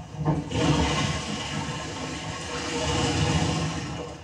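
Toilet flushing, played as a stage sound effect: a rush of water that starts suddenly, swells about half a second in and keeps going steadily.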